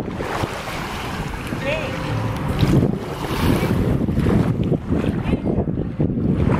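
Wind buffeting the microphone over small waves lapping on a sandy shoreline, as a rough, gusty noise. A brief high call rises and falls about two seconds in.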